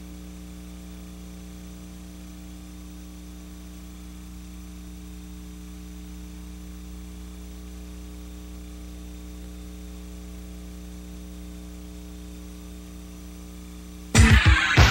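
Steady electrical mains hum with a buzz and a faint hiss on the soundtrack, unchanging throughout; nothing else is heard.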